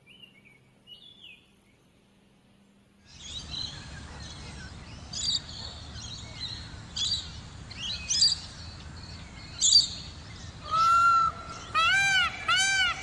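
Small birds chirping in short, high bursts every second or two over outdoor background noise, which comes in about three seconds in. Near the end a louder, pitched bird call begins.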